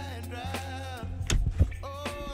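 Background pop song: a sung vocal line over a steady bass and drum beat, with drum hits in the second half.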